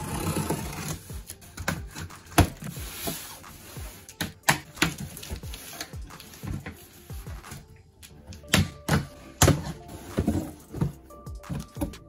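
Scissors slitting the packing tape on a cardboard shipping box, then the cardboard flaps being pulled open and handled, giving a string of sharp knocks and rips, over background music.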